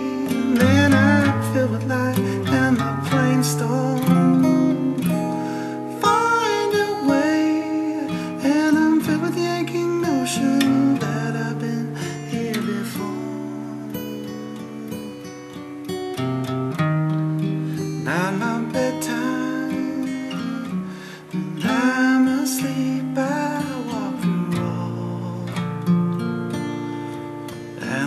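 Acoustic guitar strummed and picked through chord changes, accompanying a song between its sung lines.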